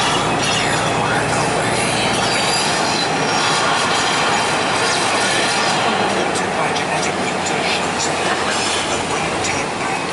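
Steady cabin noise of a moving motor coach: engine and road rumble with tyre noise, the deepest rumble easing off a couple of seconds in, and light rattles later on.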